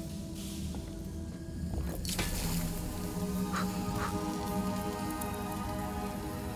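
Film sound design of a sci-fi energy field: a steady low hum with crackling and a sharp swish about two seconds in, then two short blips, as a cybernetic hand pushes into the field and is damaged by it. Soft orchestral score plays underneath.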